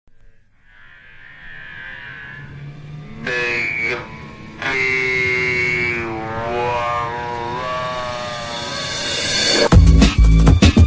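Intro of a hard tekno DJ mix: held, gliding synth tones fade in and build in loudness, then a loud kick-drum beat drops in near the end.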